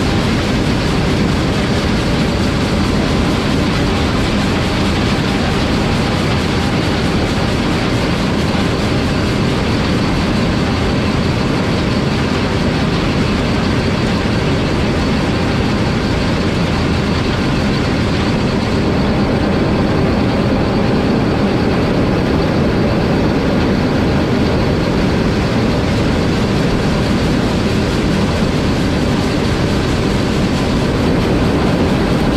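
John Deere 9400 combine running steadily while harvesting corn, its diesel engine and threshing machinery heard up close from beside the rear wheel. It is a loud, unbroken drone.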